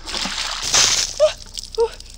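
A bucket of ice water dumped over a person's head, splashing down over her for about a second. Two short cries at the cold follow.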